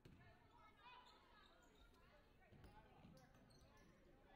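Basketball bouncing on a hardwood gym floor: a few faint, dull thumps at uneven intervals, with faint voices carrying in the large gym.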